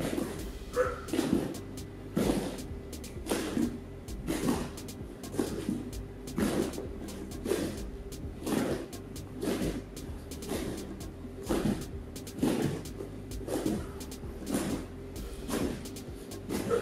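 Bare feet landing on foam gym mats in small sideways hops, a dull thud about once a second.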